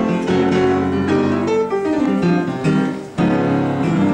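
Upright piano played in a fast boogie-woogie style with both hands. A short break comes just after three seconds in, then the playing picks up again.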